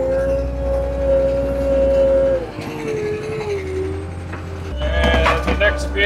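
A machine engine running steadily with a held whine, which drops to a lower pitch about halfway through and then fades.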